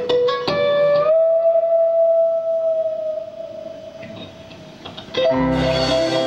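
Electric guitar plays a short run of notes, then bends up into one long sustained note that slowly fades over about three seconds. About five seconds in, the full band comes back in with drums, bass and keyboards.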